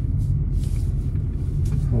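Steady low rumble of a Renault SUV's engine and tyres heard from inside the cabin as the car is steered through a cone slalom.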